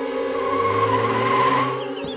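A car's tyres skidding as it brakes to a stop on dirt. The skid swells about half a second in and cuts off just before the end.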